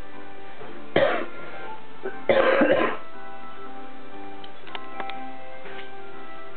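Coughing over steady background music from a television: one cough about a second in, then a quick run of several coughs a little over two seconds in.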